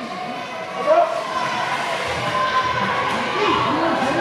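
Indistinct voices of people talking in a large indoor ice rink.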